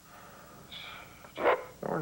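Blue-and-gold macaw calling: a faint high call, then a short harsh squawk about a second and a half in.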